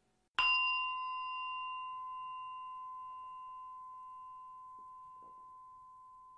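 A single bell-like chime, struck once about half a second in, ringing one clear tone with a few fainter higher overtones that slowly fades over several seconds.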